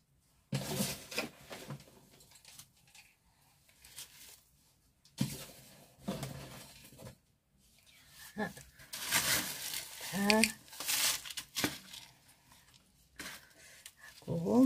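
Irregular rustling and tearing as gloved hands work a variegated star jasmine loose from its pot, roots and potting soil pulling apart, with a few murmured words.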